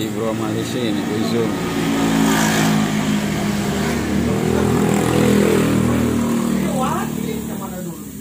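A motor scooter passing close by on the street, its engine getting louder toward the middle and fading again near the end, with a voice heard briefly at the start and near the end.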